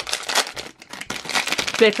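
Foil blind-bag packet crinkling and rustling as fingers work it open, in dense irregular crackles.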